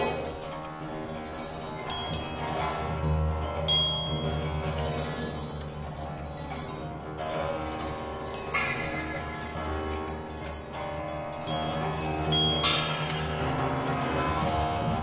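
Improvised experimental music on metal percussion: a cymbal and small bells struck and left ringing, with several sharp strikes over a steady low drone and brief high tones.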